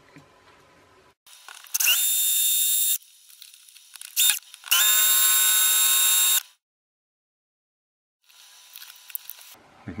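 Black & Decker 18V cordless drill running in two steady high whines, the second longer, with a brief burst between them, as it drills out the seized screw heads of a plastic clockwork motor housing.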